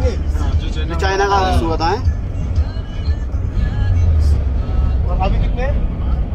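Steady low rumble of a car driving, with a singing voice over it about one to two seconds in and again briefly near the end.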